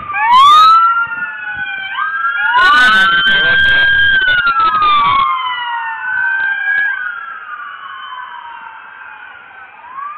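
Several emergency-vehicle sirens wailing at once, their pitches rising and falling out of step with one another. They are loudest about half a second in and again from about three to five seconds, then fade somewhat toward the end.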